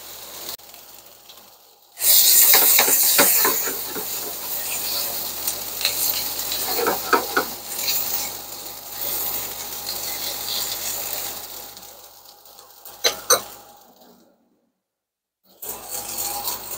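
Sliced yellow onions sizzling in oil in a frying pan as they sweat down, turned with tongs that clack against the pan. The sizzle jumps up suddenly about two seconds in and fades near the end, where a few sharp clicks come just before the sound cuts out entirely for a moment.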